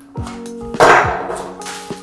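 The end cap of a cardboard print-mailing tube pulled off, giving a short, loud scraping rush about a second in, over background music.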